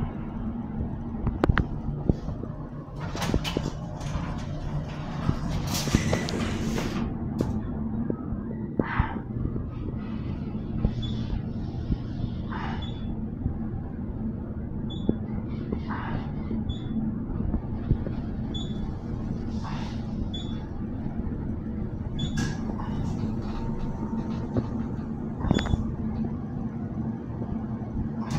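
Dover traction elevator car closing its doors, then riding up with a steady low machine hum and rumble. A few faint short high beeps sound around the middle.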